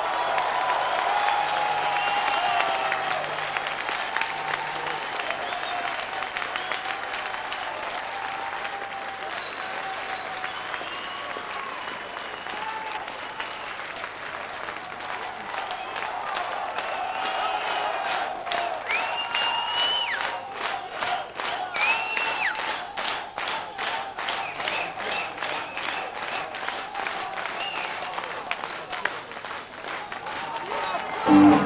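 Concert audience applauding after a song, with a few whistles; from about halfway through, the clapping turns into a rhythmic clap.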